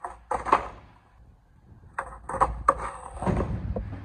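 Skateboard on concrete during a failed kickflip: a series of sharp knocks and clatters from the tail popping and the board landing and tumbling, ending in a fall.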